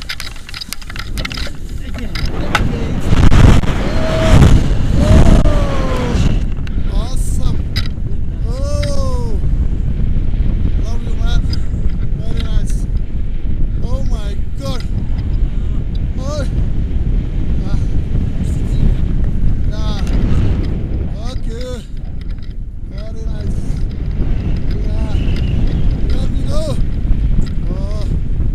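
Wind buffeting the camera's microphone as a tandem paraglider takes off and flies, loudest a few seconds in, with short voice sounds over it.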